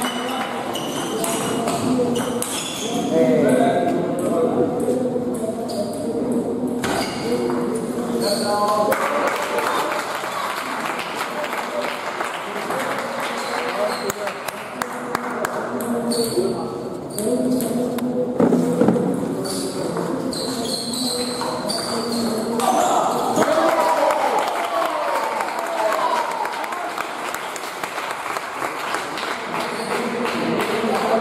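Indistinct voices of spectators talking, with the short clicks of a table tennis ball striking bats and table during play.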